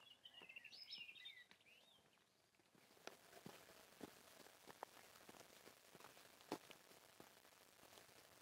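Near silence of quiet countryside: a bird singing faintly for about the first second and a half, then a short gap and scattered faint ticks and rustles.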